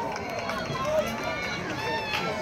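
Faint, overlapping chatter of distant voices from players and spectators around a youth football field, with no single voice standing out.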